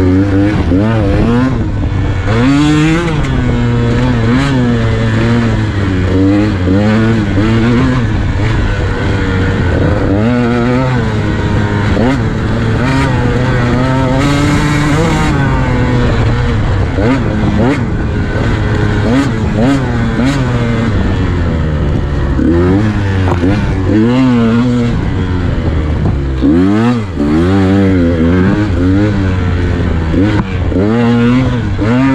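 KTM 150 XC-W single-cylinder two-stroke dirt bike engine under way, its pitch rising and falling constantly as the throttle is worked on and off. Near the end the engine briefly drops back before picking up again.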